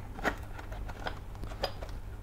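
Small metal parts clinking and clicking as a hand rummages through them: a string of light, irregular clinks.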